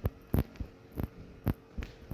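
Footsteps on a concrete floor, about two steps a second, each a dull thump, over a faint steady hum.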